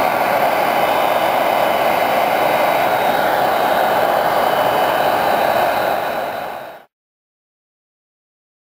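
Handheld blow dryer blowing steadily over a nail to dry the top coat over a water decal. It fades and cuts off about seven seconds in.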